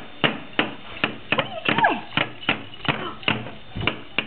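A toddler banging and knocking in a hard plastic toy box: a quick, uneven series of sharp knocks, about three a second.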